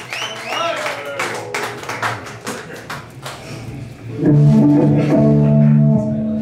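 Electric guitar between songs: a few scattered clicks and taps under some voices, then a held chord rings out loudly from about four seconds in.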